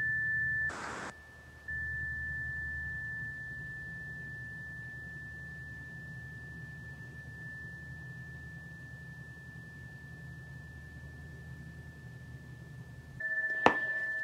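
A tuning fork ringing one steady, high, pure tone. It is cut off and struck again about a second in, then rings on, slowly fading, over a low hum.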